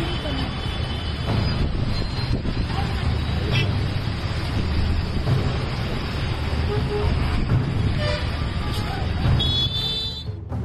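Roadside traffic noise from a phone recording: vehicles running past, with people's voices and brief horn toots near the start and again near the end.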